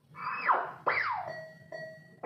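Gigames 'El Chiringuito' slot machine playing electronic win sound effects: two quick falling swoops, then a steady held tone. It marks a paying line on the reels.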